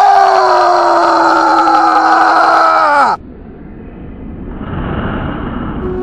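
A young man's long, loud scream, a staged death cry, held for about three seconds with its pitch sagging slightly, then cut off abruptly. A quieter steady rushing noise follows.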